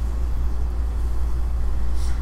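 A steady low hum, with no speech over it.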